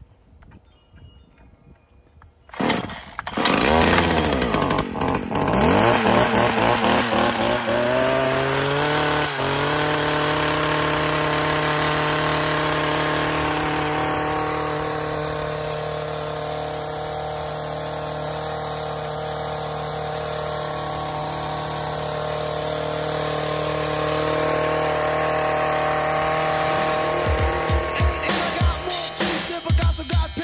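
Stihl gas-powered long-reach hedge trimmer starting up about three seconds in, revving up with a rising pitch, then running at a steady speed, with uneven surges near the end.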